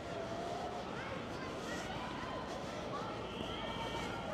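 Outdoor residential street ambience: a steady background rumble of the city with faint, scattered high chirps and short pitched calls over it.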